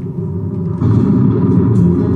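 Electric violin playing a pop melody over a recorded backing track; a little under a second in, the accompaniment grows louder and fuller.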